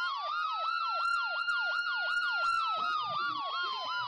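Emergency vehicle siren in a fast yelp, about four rising-and-falling sweeps a second, over a steadier siren tone that drifts lower over the last couple of seconds.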